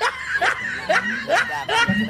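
A man chuckling, a run of short laughs a few tenths of a second apart, with talk mixed in.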